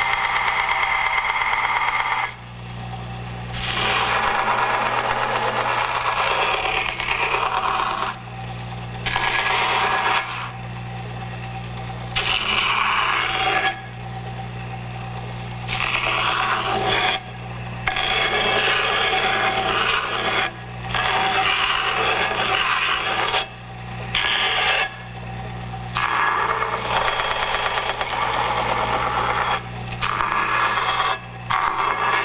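Kalamazoo belt grinder running with a steady motor hum while the edge of a Kydex thermoplastic holster is pressed against the moving abrasive belt, giving a scraping sanding sound. The sanding comes in repeated passes of a few seconds each, with short breaks where only the motor hum is heard, as the holster is worked to its final shape.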